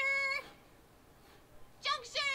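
A girl's high-pitched, wordless vocal sounds from an animated character: one held, slightly rising tone that stops about half a second in, and another starting near the end.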